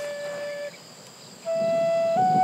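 Flute playing slow, long held notes: one note fades out under a second in, and after a short gap a new note begins that later steps up a little in pitch.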